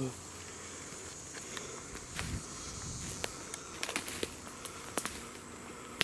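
Footsteps and handling on dry pine needles and twigs, with scattered clicks and crackles and a dull thump a little past two seconds in. Behind them runs a steady high-pitched insect hum.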